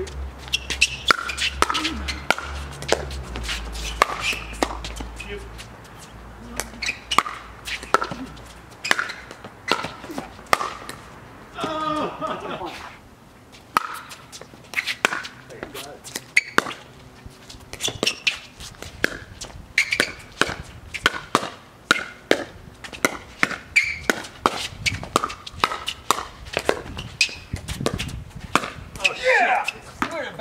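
Doubles pickleball rallies: paddles striking a hard plastic pickleball and the ball bouncing on the court, giving a string of sharp pops about every half second to a second. Players' voices break in briefly about twelve seconds in and again near the end.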